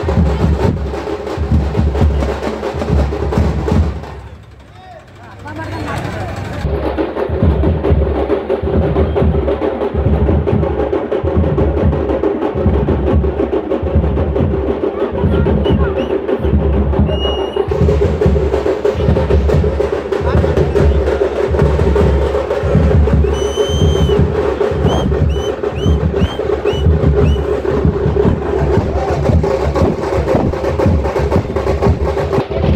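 Tamte frame drums beaten in a steady, driving rhythm by a street drumming group, with crowd voices under it. The drumming drops away briefly about four seconds in, and a few short high chirps sound near the end.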